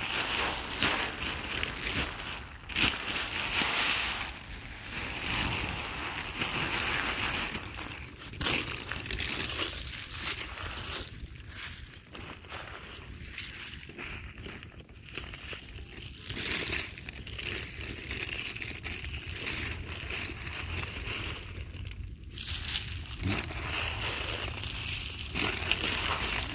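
A plastic sack rustling and crinkling as fertilizer granules are tossed out by hand onto the ground, in irregular rustles and patters.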